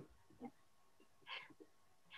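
Near silence over a video-call line, with two or three faint, short noises.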